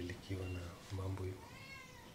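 A man's low voice speaking in two short stretches, then a single cat meow that rises and falls in pitch near the end.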